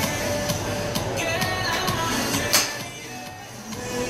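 Music playing, with one sharp crack about two and a half seconds in: a golf driver striking the ball.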